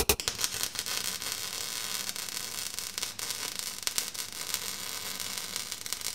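Steady static hiss with scattered faint crackles, fairly quiet, right after loud electronic music cuts off.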